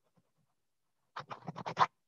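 Quick scratchy rustling close to a microphone: about seven rapid scrapes in under a second, growing louder, with a short "okay" spoken over the end.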